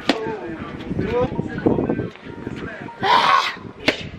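Boxing gloves striking Muay Thai pads held by a trainer: a sharp slap right at the start and another near the end, with short vocal grunts and calls between them. A brief noisy burst comes a little after three seconds.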